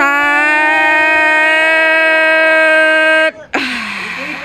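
One long, steady, pitched note, held for about three seconds before it cuts off suddenly.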